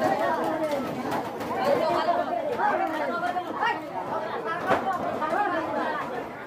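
Several people chattering and talking over one another, with a few sharp knocks from the knife chopping through the fish.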